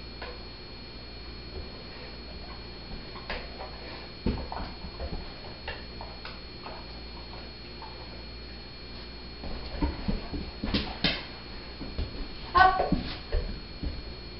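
A dog's claws and paws clicking and knocking on a low wooden board and tile floor as it steps and shifts its feet, in scattered light taps. Near the end there is a brief pitched sound, a short whine or voice.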